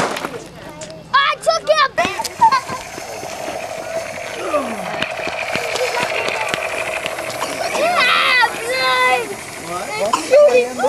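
Firework fountain spraying sparks: a steady hiss that sets in with a pop about two seconds in and builds, with a held tone running through the middle. Children's voices call out over it.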